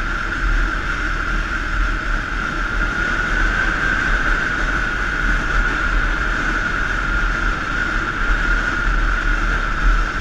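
Motorbike riding at a steady speed, heard from a camera mounted on the bike: a constant drone of engine and wind noise, with a steady whine held at one pitch over a low rumble of wind on the microphone.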